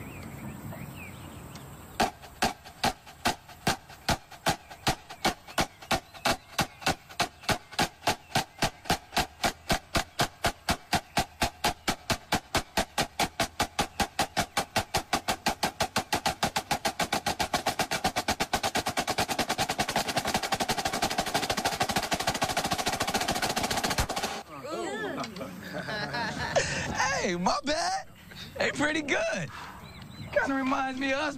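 Marching snare drum playing single strokes that start slow and speed up steadily into a fast roll, then cut off suddenly about 24 seconds in. Voices follow in the last few seconds.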